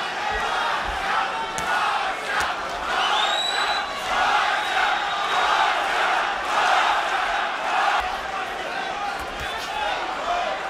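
Arena crowd noise from the boxing broadcast: a steady din of shouting voices, with a high whistle-like tone rising and holding briefly about three seconds in.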